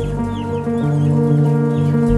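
Chickens hanging in shackles squawk several times in short, high calls that slide downward, over sustained background music with long held low notes.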